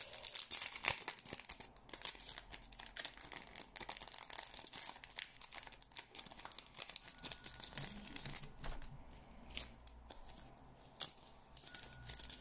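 Crinkling and crackling of a clear plastic packet of thin nail transfer foils being opened and handled, a dense run of small irregular crackles that eases off near the end.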